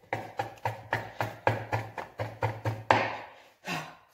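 Table knife chopping through a peanut butter sandwich onto a plastic cutting board: quick, even knocks about four a second, stopping just before the end.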